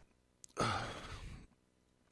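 A man's audible breath into the microphone, a sigh-like rush of air lasting about a second and fading, just after a small mouth click.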